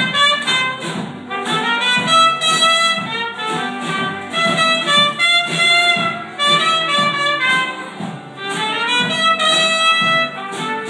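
A wind instrument plays a melody of held notes over a band, with light percussion keeping a steady beat of about two strokes a second.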